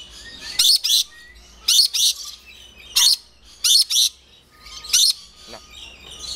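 Lorikeets giving short, shrill screeching calls: about five quick bursts roughly a second apart, some in rapid pairs.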